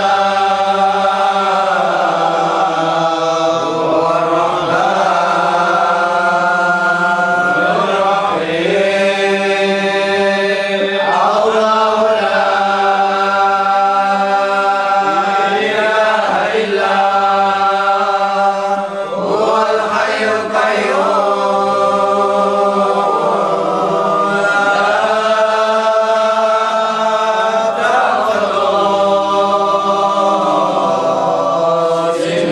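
Group of men chanting Qadiriyah dhikr in unison, in long drawn-out sung phrases that each open with a rising glide, repeating about every four seconds over a held low note.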